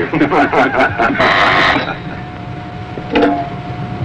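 Several men laughing together, dying away after a couple of seconds; about two seconds in a faint steady tone begins and holds over a low background hum.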